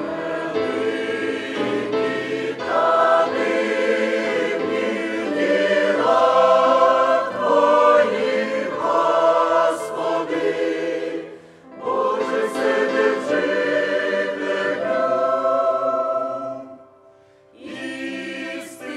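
Mixed choir of men's and women's voices singing a hymn in harmony, coming in together at full strength. It breaks off briefly between phrases about two thirds of the way through and again near the end.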